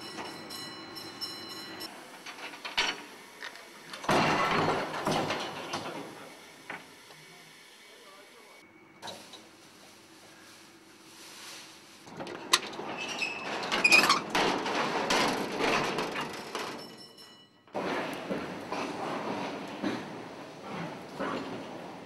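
An old passenger lift in motion: the cab's machinery rumbling and clattering unevenly. It grows louder about four seconds in and again between about twelve and seventeen seconds, with a few sharp knocks. It cuts off suddenly near the end and then starts up again.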